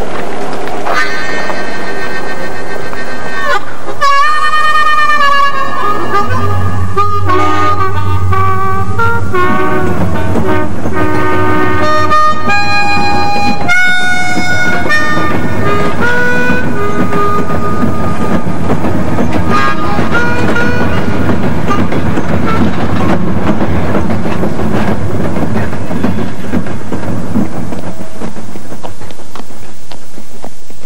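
A melody of held, wavering notes fills the first half. From about the middle on, a freight train rumbles steadily past.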